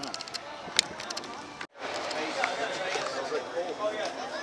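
Crowd of people talking nearby as they walk, with no one voice standing out, and a few sharp clicks in the first second. The sound drops out briefly before two seconds in, then the chatter resumes.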